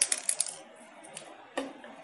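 Hard plastic toy animal figurines clicking against a hard floor as they are set down: a quick run of clicks in the first half second, then one more about a second and a half in.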